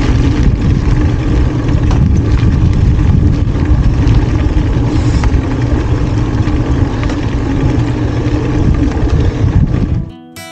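Steady wind rumble on the microphone of a bike-mounted camera, mixed with tyre noise, as a bicycle rolls along a bumpy trail at riding speed.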